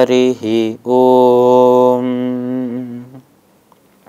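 A male voice chanting a devotional invocation: two short phrases, then one long held note from about a second in that fades out a little after three seconds.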